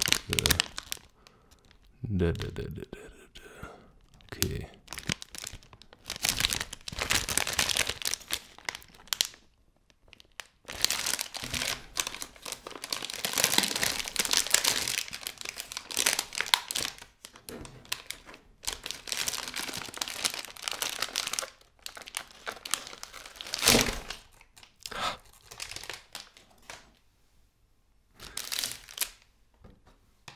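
A plastic chocolate-bar multipack bag being torn open and crinkled by hand, in spells of crackling with short pauses between them.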